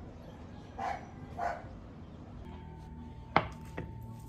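A sharp knock on a plastic cutting board, followed by a lighter tap, as a garlic bulb is handled on it, over a faint steady hum. Earlier, about a second in, come two short muffled sounds half a second apart.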